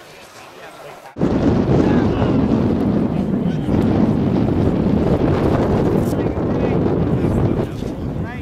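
Wind buffeting the microphone: a loud, even rumbling rush that starts suddenly about a second in and eases near the end, with faint voices under it.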